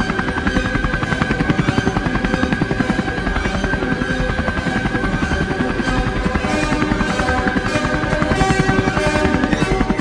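Several Bell UH-1 Huey helicopters flying in low, their rotor blades chopping rapidly and steadily, with music playing over them.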